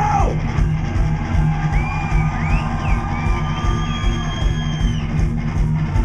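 A live psychobilly band plays an instrumental passage with electric guitars, an upright double bass and drums, over a steady beat. A high melodic line slides up and down in pitch above the band.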